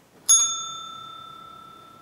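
A single bell-like chime struck once about a quarter second in. It rings with a clear high tone and fades slowly.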